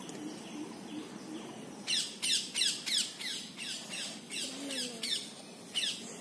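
A bird calling repeatedly: a fast run of short downward-sweeping squawks, about three a second, starting about two seconds in.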